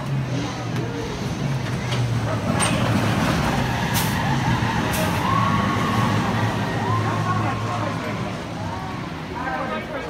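A roller coaster train rumbling along its wooden track as it climbs the first hill. The rumble builds through the middle and eases off near the end, with a few sharp clicks and voices heard over it.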